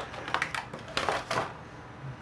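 Clear plastic packaging bag crinkling as hands open it to take out a small action-figure accessory, in a few short crackling bursts that stop about a second and a half in.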